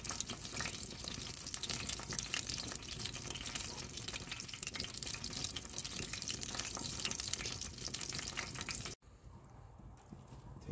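Duck fat and juices sizzling and crackling in a cast-iron pan over wood coals: a dense spatter of tiny pops over a steady hiss. It cuts off suddenly near the end, leaving a much quieter background.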